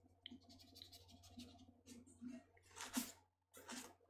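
Faint scratching of a watercolour brush on sketchbook paper, with two louder brief rustles near the end as a tissue is wiped across the page.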